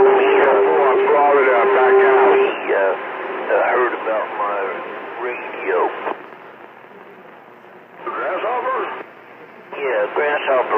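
CB radio receiver playing transmissions with a thin, narrow radio sound: garbled voices over a steady whistle tone that stops about two and a half seconds in. Broken fragments of speech follow, then open static hiss with a short burst of voice about eight seconds in.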